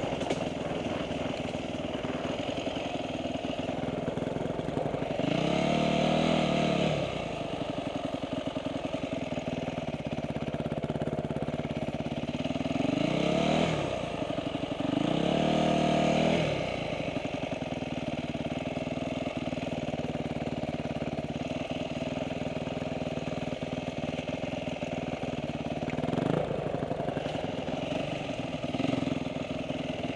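Dirt bike engine running at low throttle as the bike rolls slowly, revving up briefly about five seconds in, twice around fourteen to sixteen seconds in, and with a smaller blip near the end.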